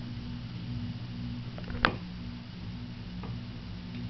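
A fire alarm pull station's T-bar handle is pulled, giving one sharp click about two seconds in, over a steady low electrical hum. No alarm horn sounds: the power supply lacks the amperage to drive it, so only the strobe fires.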